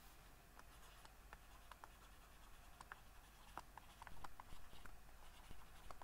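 Faint stylus strokes and taps while handwriting on a pen tablet: a scatter of small ticks and scratches that grows busier about four seconds in.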